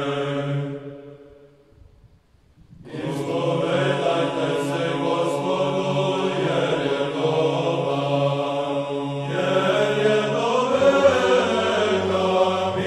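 Choral chant: voices holding long, sustained notes over a steady low drone. A phrase fades out about a second in, and after a brief near-silent gap a new phrase enters about three seconds in.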